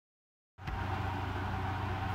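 Steady low hum with a faint hiss inside a small travel trailer, starting about half a second in after total silence.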